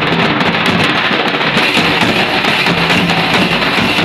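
Live folk dance music led by large hand-beaten barrel drums, nagara among them, played in a fast, dense, steady rhythm.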